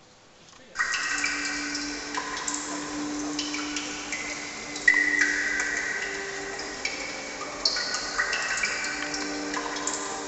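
Music starts suddenly about a second in: high ringing notes that change every second or so over a held low note.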